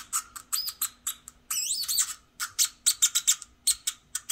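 A 555-timer touch noise maker (a Drawdio-style circuit) squeaking through its small speaker: a quick run of short, high chirps and beeps, with the pitch swooping up and down around the middle as a finger on the touch pads changes the resistance and so the oscillator's frequency.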